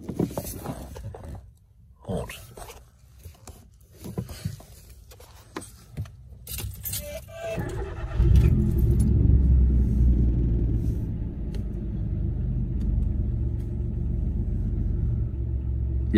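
Keys jangling and small clicks, then about eight seconds in the Citroen C1's engine starts and settles into a steady idle.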